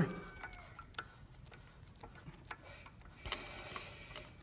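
Faint scattered clicks and a thin whistle, then a brighter hiss of air near the end, as the air pressure is slowly raised on an Apollo 40 pneumatic airless piston pump before it starts cycling.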